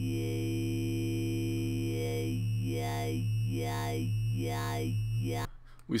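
Synthesized dubstep talking wobble bass: a held square-wave note from Ableton's Operator, downsampled through Redux, with its filter swept by an LFO about once every 0.8 s. With the LFO amount turned down the wobble is shallow and the vowel-like 'mouth' effect is nearly lost. The sweeps grow more pronounced from about two seconds in as the amount is raised again, and the note cuts off about five and a half seconds in.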